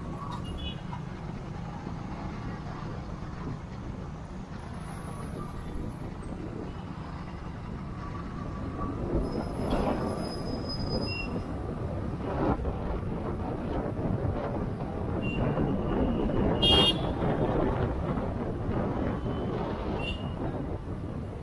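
Busy town road traffic heard from a moving two-wheeler: a steady low rumble of engines, tyres and wind, with vehicle horns honking now and then. The loudest honk comes about three-quarters of the way through.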